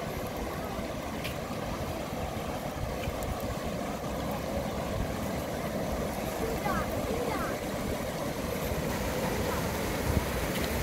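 Steady rushing noise of water flowing through concrete fish-hatchery raceways, with a few short chirps about seven seconds in.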